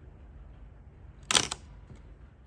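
Pentax MG 35 mm SLR firing its shutter once, about a second and a third in: a short, sharp clack of the mirror and shutter.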